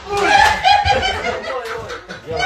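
Several men laughing loudly, in choppy bursts.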